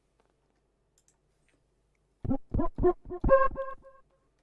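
Martinic AX73 software synthesizer, an emulation of the Akai AX73 analog synth, playing a lead preset from a keyboard. After about two seconds of silence, a quick run of short notes ends on a held note.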